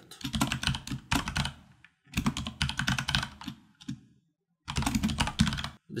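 Computer keyboard typing in quick runs of keystrokes, with a short pause a little past halfway.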